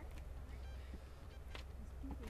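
Steady low wind rumble on the microphone, with a few faint clicks.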